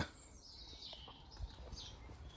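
Faint bird chirps in the background, with a soft low thump about one and a half seconds in.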